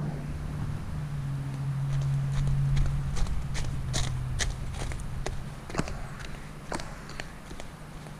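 Footsteps crunching on gravel at a walking pace, about two steps a second, over a steady low hum.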